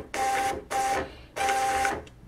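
Citizen CL-S521 label printer running its self-test: the feed motor whines in three short stop-start bursts as it does a paper sense on the label gap and then prints the status page.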